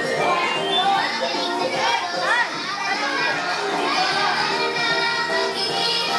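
Music playing for a children's dance, with many small children's voices chattering and calling out over it.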